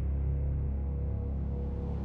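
Tense, ominous background music: low sustained drone-like tones with a held higher note, no beat.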